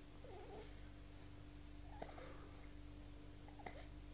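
Faint, short vocal sounds from a three-month-old baby straining to roll over: a small wavering coo or grunt near the start and another about two seconds in. A steady low hum runs underneath.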